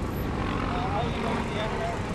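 Steady outdoor street noise of vehicle traffic, with faint distant voices.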